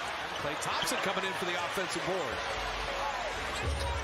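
Basketball game broadcast playing quietly underneath: a commentator talks over arena crowd noise and the faint sounds of play on the court.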